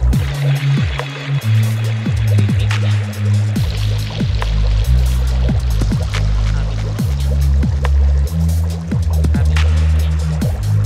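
Instrumental background music with a deep bass line and frequent short percussive hits that drop quickly in pitch.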